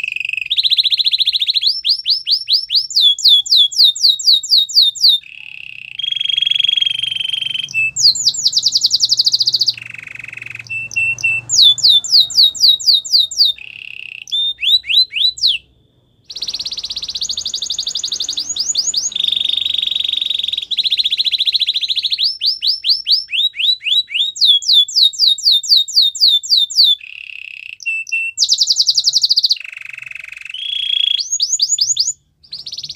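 White canary singing a long song in phrases: fast runs of repeated down-sweeping notes alternating with held, buzzy rolled notes, broken by a brief pause about halfway.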